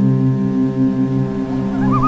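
Ambient meditation music: a steady, sustained drone chord with a short warbling high tone that wavers up and down near the end.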